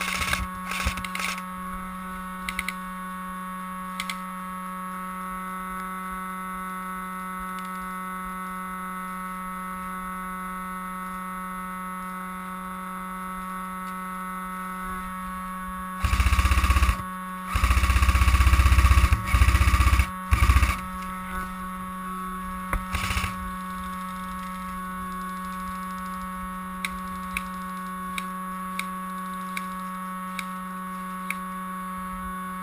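Steady electrical hum and whine from a head-mounted action camera's recording, with loud rumbling bursts of wind or handling noise on the microphone a little past halfway, and a few faint scattered clicks.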